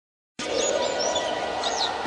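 Track intro starting about half a second in: birdsong chirps, short high whistled glides, over a steady hissing ambient bed.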